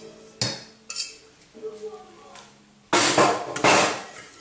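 Wire whisk working a chocolate mixture in a stainless steel pot. Two light clinks come early, then about a second of loud, fast scraping and clattering against the pot sides near the end.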